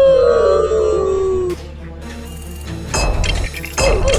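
Lego bricks clattering as a motorized Lego hammer smashes into a Lego brick wall: sharp knocks about three seconds in and again just before the end. Before that, a loud tone glides downward for about a second and a half.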